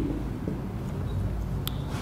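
Pause in speech: a steady low hum of room tone, with one faint click about one and a half seconds in.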